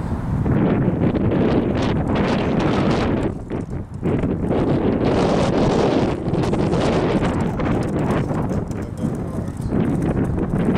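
Wind gusting hard across the microphone, a loud buffeting that eases briefly between three and four seconds in.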